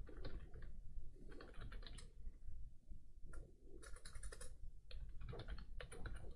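Computer keyboard typing in short irregular bursts of keystrokes, with pauses between them.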